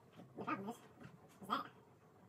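Two short vocal sounds, pitched and bending, about a second apart over a quiet room.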